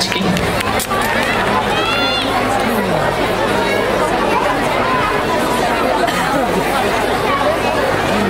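Audience chatter: many children's and adults' voices talking over one another, with one high child's voice about two seconds in.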